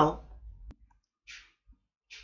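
A single sharp click less than a second in, followed by a brief soft hiss, after one spoken word.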